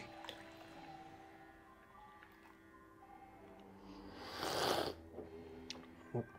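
A short, noisy sip of hot coffee from a cup, lasting under a second, about four seconds in, over faint background music.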